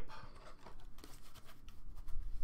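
Soft rustling and a few light clicks of a glossy trading card being handled and turned between the fingers.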